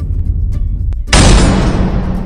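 Logo intro sound effect: a loud boom fading away, then a second explosion-like boom about a second in that starts loud and dies away.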